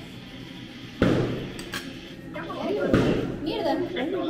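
A sudden sharp knock about a second in, the loudest sound here, then a person's voice.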